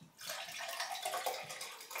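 Bottled water poured into a tall empty drinking glass: a steady splashing stream that stops near the end.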